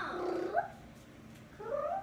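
A cat meowing twice: one drawn-out meow at the start and a shorter rising one near the end.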